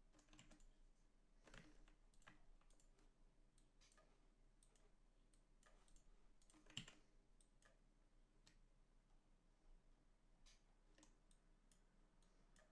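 Faint, irregular clicking of a computer mouse and keyboard, with near silence between the clicks; one click is a little louder about two-thirds of the way through.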